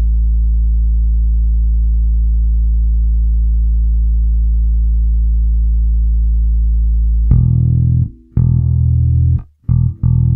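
Bass guitar holding a low A note on its A string at a steady, unchanging level. About seven seconds in it gives way to several short plucked bass notes with brief gaps between them.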